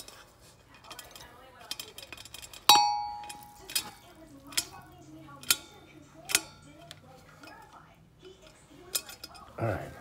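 Stanley stainless-steel thermos food jar clinking against a glass bowl as jambalaya is tipped and knocked out of it. There is one loud ringing clink about three seconds in, then about four lighter knocks roughly a second apart.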